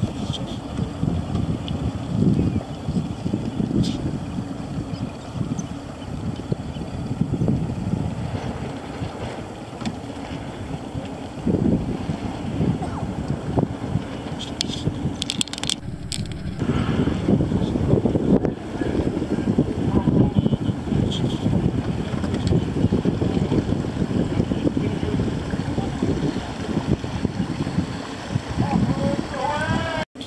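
Wind buffeting the microphone: a low, gusting rumble that rises and falls, with a brief break about halfway through.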